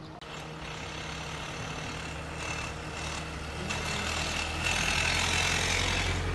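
A motor vehicle's engine running, its low hum and noise building steadily louder through the second half.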